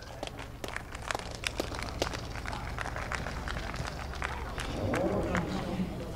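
Sparse, scattered hand claps from a small crowd over a low steady hum, with faint voices in the background near the end.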